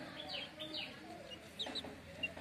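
Young chickens peeping: a few short, falling chirps over lower, softer chicken calls.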